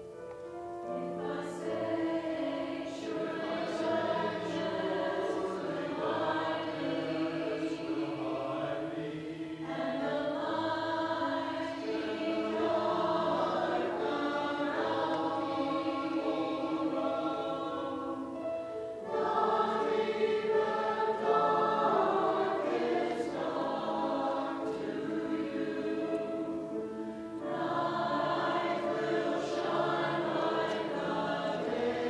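Mixed church choir of men and women singing in parts, in long phrases with three brief breaks between them.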